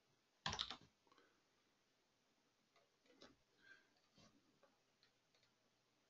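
Mostly near silence, with a short burst of computer keyboard keystrokes about half a second in, then a few faint clicks around three to four seconds in.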